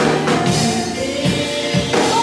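Female praise team singing a gospel song in harmony into microphones, holding long notes over amplified band backing with drums.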